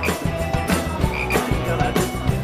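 Live frogs croaking, several croaks in quick succession.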